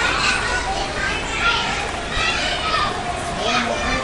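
Children's voices calling out as they play, high-pitched and continuing throughout.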